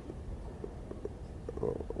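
Low room hum with a few faint clicks, as from the mouth, during a pause in a man's speech. A soft murmur of his voice begins near the end.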